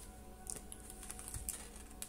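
A few faint clicks and taps of a tarot card being drawn and laid down on a wooden table, with long acrylic nails clicking against the card.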